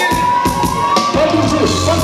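Live band music with a steady beat and a long held high note that rises slightly and fades out just before the end.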